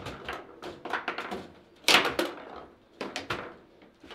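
Table football in play: the ball knocked about by the plastic figures, with rods clacking and banging against the table. It comes as an irregular run of sharp knocks, loudest about two seconds in.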